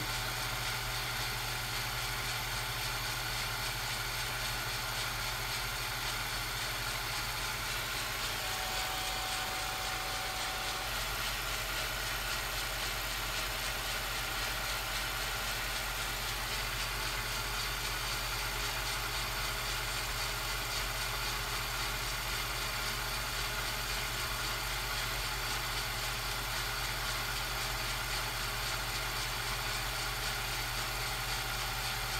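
Steady low electrical hum under an even hiss, unchanging throughout, with no train sounds: the background noise of the home-movie transfer.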